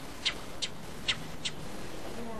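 Cactus wren calling: four short, harsh rasping notes in the first second and a half, about a third to half a second apart.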